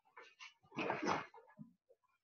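Faint movement sounds of a man throwing a back-leg round kick into a spinning crescent kick on a padded mat: brief scuffs and rustles of a karate uniform and bare feet. The loudest comes about a second in.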